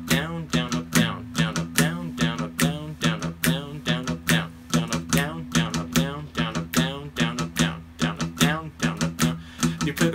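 Acoustic guitar strummed in a fast, repeating galloping pattern of down, down, up, down strokes, the strings ringing steadily under each stroke.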